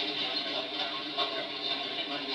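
Railroad grade crossing in operation as a train moves through: a steady mix of train noise and a ringing crossing warning bell.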